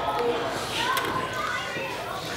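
Indistinct children's voices and chatter, with no clear words.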